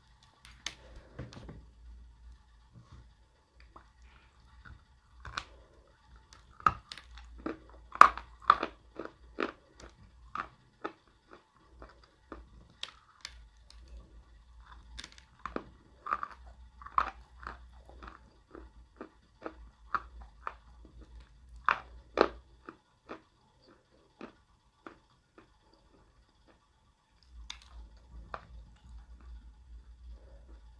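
Close-up biting and chewing of a piece of dry grey edible clay (Uyghur grey clay): many irregular sharp crunches for the first twenty-odd seconds, then they die away near the end.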